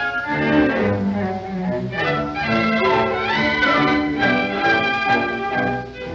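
Instrumental orchestral music from a 1936 film soundtrack, with strings playing a melody over a moving accompaniment. The music dips briefly near the end as a new passage begins.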